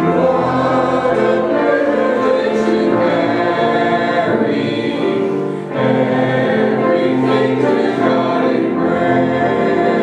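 Congregation singing a hymn in unison, led by a woman's voice, with held notes changing about once a second and a brief breath between lines about five and a half seconds in.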